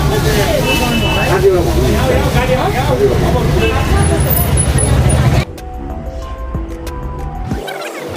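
Busy crowd chatter, many overlapping voices with street traffic noise, cuts off suddenly about five seconds in to quieter background music with long held notes.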